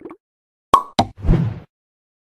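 Cartoon-style pop sound effects: two sharp pops about a quarter second apart, then a short low thud.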